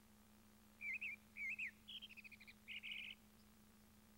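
Faint bird chirps, a cartoon dawn cue: four short bursts of twittering starting about a second in, the last two a quick run of chirps and a brief trill.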